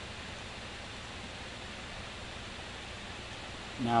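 Steady, even hiss of the recording's background noise with no distinct sounds; a man's voice comes in right at the end.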